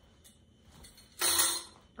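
Stacked enamelware plates clattering once, sharply, a little over a second in, as they are picked up and handled.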